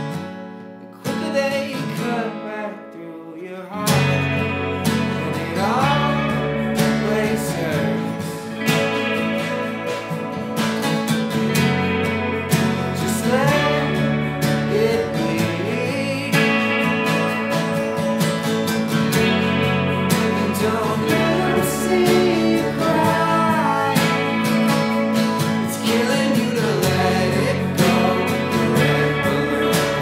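Rock band playing live: acoustic and electric guitars, bass and drum kit. A sparse guitar passage opens, and about four seconds in the full band comes in with bass and drums and keeps going.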